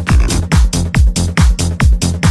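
Electronic dance music from a DJ mix: a steady four-on-the-floor kick drum, a little over two beats a second, with a rolling bass filling the gaps between the kicks and hi-hats on top.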